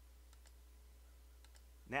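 A few faint clicks of a computer mouse over a steady low electrical hum.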